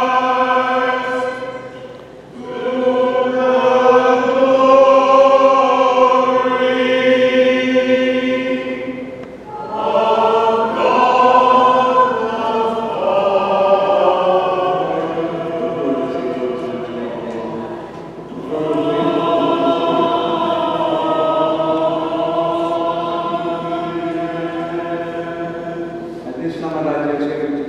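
A choir chanting a liturgical hymn in long, held phrases. The singing breaks off briefly about two, nine and a half and eighteen seconds in.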